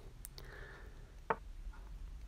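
Faint room tone with a few short, sharp clicks, the clearest a little past the middle: the Chess.com app's piece-move sound as a move is played on the board.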